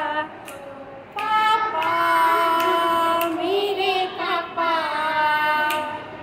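Two young girls singing a Hindi song together without accompaniment, holding long notes, with a short break in the singing just after the start.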